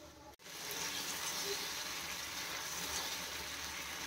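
Onion and tomato masala, loosened with a little rice-cooking water, sizzling steadily in a frying pan as it is fried down; the sizzle starts about half a second in.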